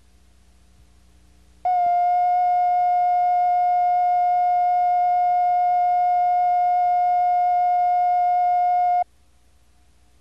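A single steady, slightly buzzy electronic test tone, the line-up tone that goes with a videotape slate. It starts suddenly about two seconds in and cuts off suddenly about seven seconds later. A faint low hum lies under it before and after.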